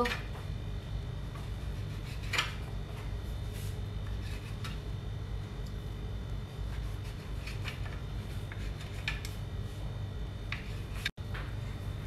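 A kitchen knife cutting the crusts off slices of white bread on a wooden cutting board: a few faint scattered scrapes and taps, the clearest about two and a half seconds in, over a low steady background hum.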